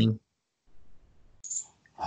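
A voice speaking over an online call stops just after the start. There is a pause, with a single brief click about one and a half seconds in, and then speech resumes at the end.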